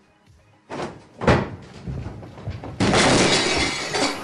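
Loud crashing noises over music: a sudden crash about a second in, then a longer noisy rush near the end.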